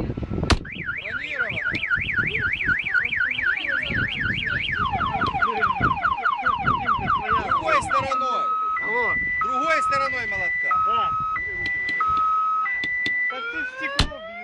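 Car alarm siren cycling through its tones: a fast warble about four times a second, then a run of falling sweeps, then a high-low two-tone alternation, and rising whoops near the end. The alarm has been set off by the car being struck with a hammer, and a sharp hammer blow on the car is heard about half a second in.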